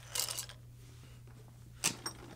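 Hard plastic fishing plugs being set down on a wooden tabletop: a brief clatter of plastic and treble hooks just after the start, then a single sharp click near the end.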